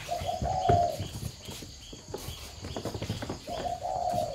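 Spotted doves cooing: a low coo at the start and another beginning near the end, over irregular light knocks and scratches.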